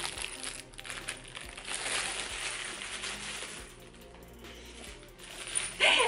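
Tissue paper crinkling as a small wrapped package is opened by hand, with a light metallic jingle from the cat toy inside.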